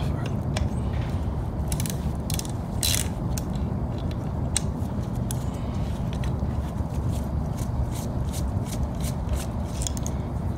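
Small hand ratchet clicking in short, uneven runs as a hex-bit socket backs out the last bolt holding the shifter to a T56 transmission.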